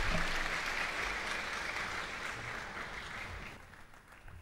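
Applause from an audience in a large hall, many people clapping at once, steadily dying away and fading out near the end.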